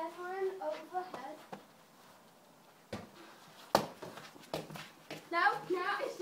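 A child's voice, wordless or unclear, in the first second or so and again near the end, with a few sharp knocks between them, the loudest a single hard thump a little over halfway through.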